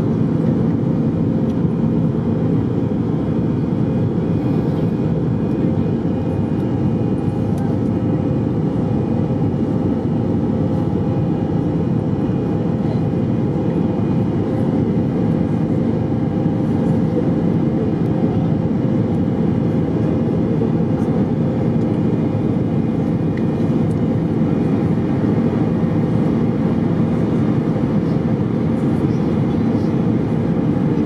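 Steady low drone inside the cabin of an Airbus A319 climbing out after takeoff: engine and airflow noise heard from a seat by the wing.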